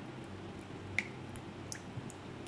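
A few small, sharp clicks over a low steady hum. The clearest click comes about a second in, and fainter ones follow near the end.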